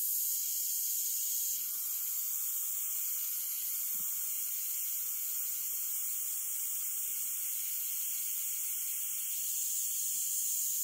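Iwata CM-SB airbrush spraying paint: a steady hiss of air through the brush.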